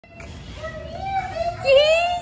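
Miniature schnauzer whining in high, wavering cries that grow loudest near the end: the excited whining of a dog reunited with its owners.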